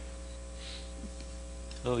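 Steady low electrical hum, typical of mains hum in a lecture-hall recording, with a faint brief hiss about half a second in. A man's voice starts speaking near the end.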